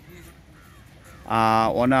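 Short pause with faint outdoor background, then about a second and a quarter in a man's voice comes back with a drawn-out, held vowel running into a spoken word.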